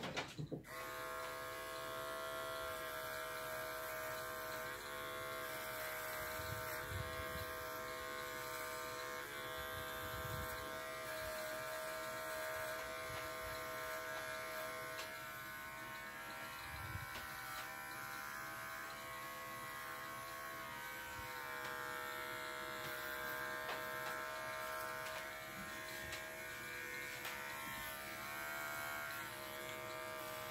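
Electric dog-grooming clippers switched on about half a second in and running steadily, with small dips in pitch now and then.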